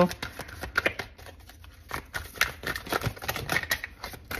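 A hand-held deck of oracle cards being shuffled and handled: a run of quick, irregular light clicks and flicks of card on card.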